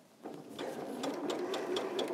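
Domestic electric sewing machine starting up a quarter of a second in and running steadily, its needle stitching a patchwork seam with rapid, even ticking.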